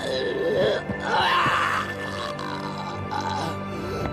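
Background score of sustained tones, with a man groaning in pain in the first half or so.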